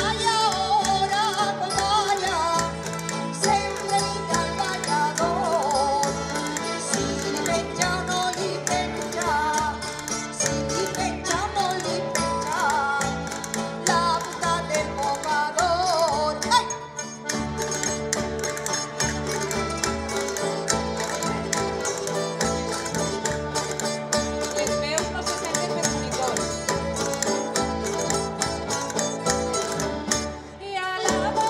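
A rondalla of plucked strings (bandurrias, laúdes and guitars) strumming a rhythmic folk accompaniment while a man sings over a PA. The music breaks off briefly about halfway through, then picks up again.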